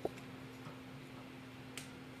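Hard plastic Lego Bionicle pieces clicking as the figure is handled and parts are fitted onto it. There is a sharp click right at the start and a fainter one near the end, over a steady low hum.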